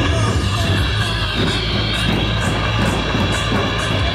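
Music with a steady beat.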